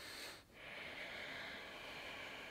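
A man breathing deeply and audibly through the nose to slow his pulse after a set of push-ups. One breath ends about half a second in, and the next starts at once and runs on.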